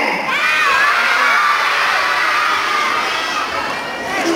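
A large audience of children shouting a greeting back together in answer to a call, a dense mass of high voices that thins out near the end.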